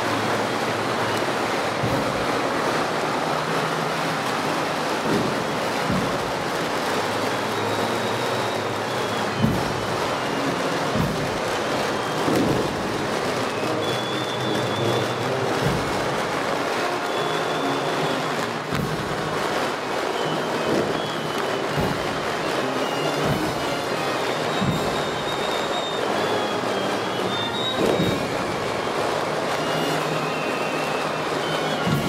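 Procession band playing, heard through a dense wash of crowd and street noise, with occasional sharp knocks.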